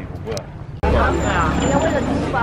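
Street sounds: a vehicle engine's steady low rumble with people talking. It is quieter for the first part of a second, then the rumble and voices come in suddenly and loudly.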